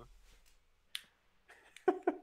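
A single sharp click about a second in, over quiet room tone, followed by a few faint ticks.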